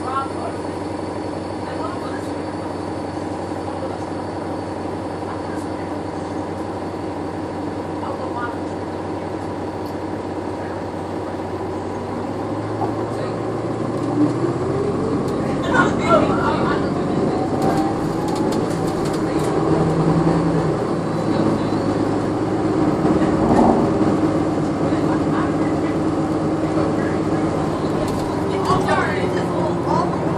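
Cabin sound of a Nova Bus LFS hybrid bus with a Cummins ISL9 diesel and Allison EP40 hybrid drive: a steady running hum, which gets louder about halfway through as the bus accelerates, with a rising whine from the hybrid drive. The whine holds for a while and falls again near the end as the bus slows.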